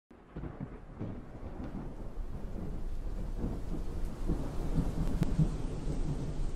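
Low rumble like distant thunder with a hiss of rain, fading in from silence and growing steadily louder.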